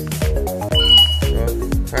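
A single short, high beep from an Aima Jeek electric scooter about a second in, as it powers on after two presses of its smart key fob. Background music with a steady beat plays throughout.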